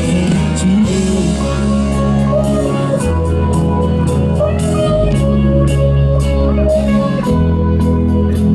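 Live rock band playing an instrumental passage with guitar and drum kit, with no vocals.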